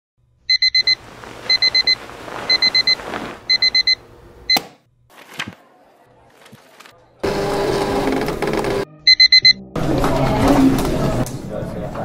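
Digital alarm clock beeping in quick groups of four, one group a second, four times over, then a sharp click as it stops. After a quiet gap, two stretches of louder mixed background sound come in, with one more group of four beeps between them.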